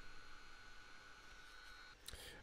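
Small 5 V cooling fan in a Raspberry Pi 4 case, running with a faint steady whine over a soft hiss; the whine stops near the end.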